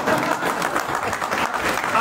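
Audience applauding, a dense steady patter of many hands clapping.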